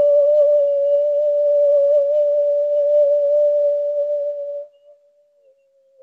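A single long, steady held tone at a mid pitch with a slight waver and a few faint overtones, cutting off about four and a half seconds in; a new, more wavering tone starts at the very end.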